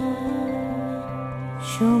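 Bangla song: a long held note softens, and near the end a female voice starts a new sung phrase with vibrato.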